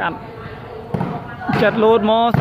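Volleyball game sounds: a sharp slap of the ball at the start and lighter impacts about a second in, then a loud voice calling out near the end.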